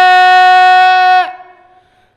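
A man's voice holds one long, steady sung note at the end of a line of an unaccompanied noha, a Shia mourning lament. The note dips and fades out just over a second in.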